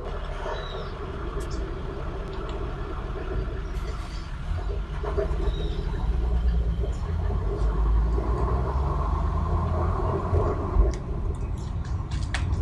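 Street traffic noise from a car driving through city streets: a steady low engine and road rumble that grows heavier about halfway through.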